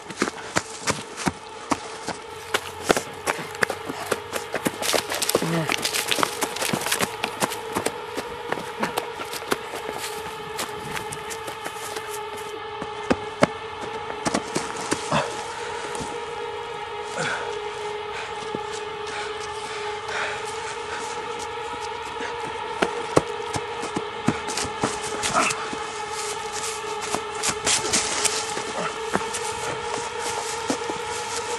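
A steady hum of two held tones, one low and one an octave above, under constant irregular crackling and clicks.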